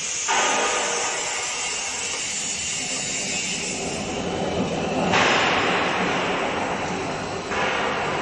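5-ton hydraulic decoiler running on test, its hydraulic pump and mandrel drive making a steady mechanical noise. The noise steps up sharply just after the start and again about five seconds in, as controls are switched.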